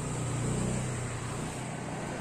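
A motorcycle passing on the road. Its engine hum grows louder to a peak about half a second in, then fades.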